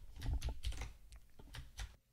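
Computer keyboard typing: an irregular run of quick key clicks.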